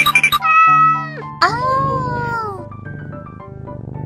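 Cartoon cat meow sound effects over steady background music: a quick stuttering call, then a held meow, then a longer meow that rises and falls away, all within the first three seconds.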